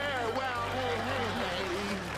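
A man singing into a microphone, with long gliding notes, over backing music.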